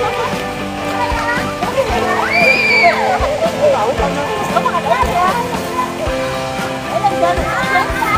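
Children shouting and chattering at play, with one child's high, held squeal about two and a half seconds in, over background music with steady held notes.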